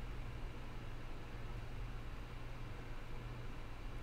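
Faint steady low hum with a light even hiss: background room tone or electrical hum of the recording setup.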